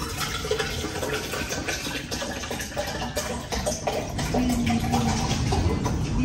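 Water pouring from a plastic bottle into a tall tumbler, a steady splashing stream as the cup fills.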